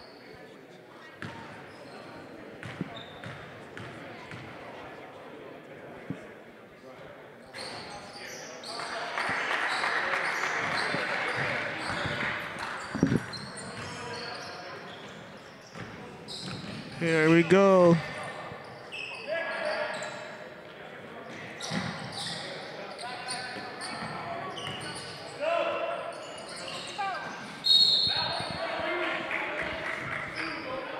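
Live basketball game sounds in an echoing gym: the ball bouncing on the hardwood floor, footwork and players' voices, with a loud wavering shout a little past halfway.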